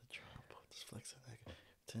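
A man whispering softly under his breath.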